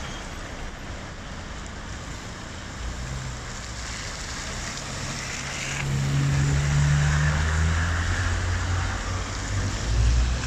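Car tyres hissing on a wet road amid steady rain, with an engine running close by that grows louder about halfway through as a car comes past.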